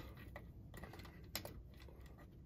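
Faint, scattered light clicks from fingers working the plastic twist-type antenna terminals on the back of a Sansui 3900Z receiver while a thin wire is fitted into them.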